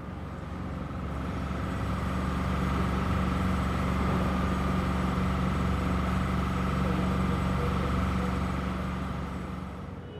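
An engine running steadily, a low hum with a faint higher whine above it, swelling in over the first few seconds and fading away near the end.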